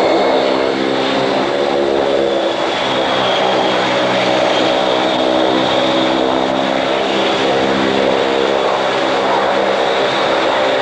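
Vickers Viscount's four Rolls-Royce Dart turboprop engines running as the airliner taxis: a steady engine drone with a high, thin whine above it.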